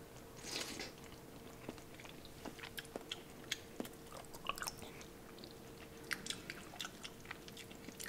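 Faint chewing and small wet mouth clicks of someone eating a spoonful of chili, with a soft breath about half a second in. A faint steady hum runs underneath.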